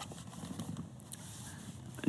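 Faint rustling of a Bible's thin pages as they are leafed through by hand.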